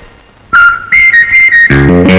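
Film background music. After a brief pause comes a high, whistle-like melody of a few held notes, answered near the end by a run of plucked guitar and bass notes.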